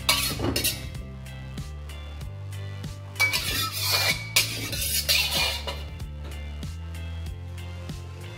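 Metal wok spatula scraping and clinking around a carbon-steel wok as it is heated with oil, in three short bursts: at the start, about three seconds in, and about five seconds in. Background music with a steady bass runs underneath.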